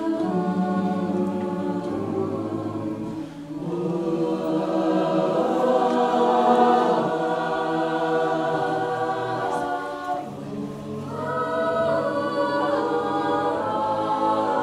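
Mixed-voice a cappella group singing held chords in several parts, with no instruments. The sound dips briefly twice between phrases, a few seconds in and again about ten seconds in.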